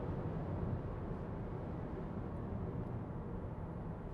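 Steady road and wind noise inside the cabin of a Nissan X-Trail at highway speed, easing slightly as the car slows from about 120 km/h.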